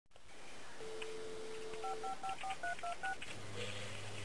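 Telephone dial tone, a steady two-note hum, followed by seven touch-tone (DTMF) digits dialed in quick succession. A low steady tone starts near the end.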